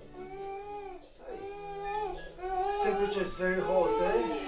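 A sick toddler crying in a run of long wails, each about a second and arching up and down, louder in the second half.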